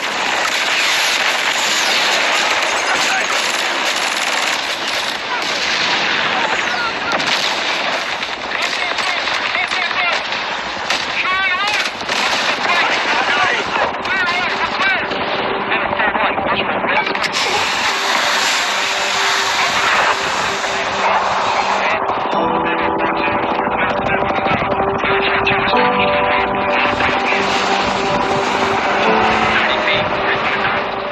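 Dense, continuous automatic gunfire from a war-film soundtrack. Held music notes come in about two-thirds of the way through.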